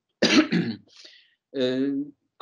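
A man clears his throat with a short, sharp burst about a quarter of a second in, then holds a steady hesitation sound near the end before going on speaking.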